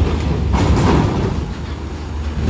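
Mitsubishi FE 84 GBC medium bus's diesel engine running as it drives slowly off a ferry's steel ramp, with clatter from the wheels rolling over the steel plates, loudest about a second in.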